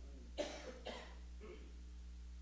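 A soft cough from a person about half a second in, followed by two fainter breathy sounds.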